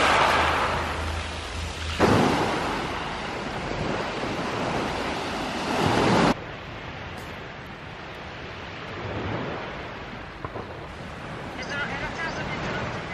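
Small waves breaking and washing up a pebble beach, with a fresh surge about two seconds in that fades away. After a sudden drop about six seconds in, a quieter steady sea wash continues.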